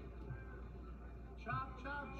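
Quiet arena background over a steady low hum, with a faint voice calling out about a second and a half in.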